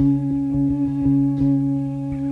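Guitar solo: one sustained note with rich overtones, re-picked in quick, fairly even strokes.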